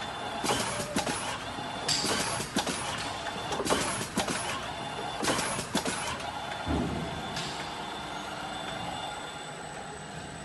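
Linear pick-and-place capping machine running as it caps plastic jugs on a conveyor: a run of short hissing bursts of air and mechanical clicks, irregularly spaced over the first six seconds, then a steadier, quieter machine noise.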